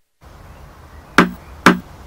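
Knocking on a door: two sharp raps about half a second apart, over faint background.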